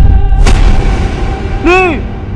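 Loud, deep booming rumble with a sharp hit about half a second in: a dramatic boom effect on an edited horror intro. Near the end a short tone rises and falls.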